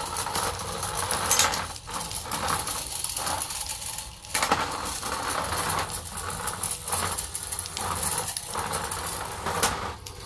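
Small remote-controlled battlebot driving: its two N20 gear motors whirring as its 3D-printed wheels run over plastic arena tiles, with a few sharp knocks, the loudest about a second and a half in and near the end.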